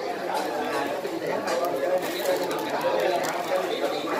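Overlapping chatter of several people talking at a dining table, no single voice clear.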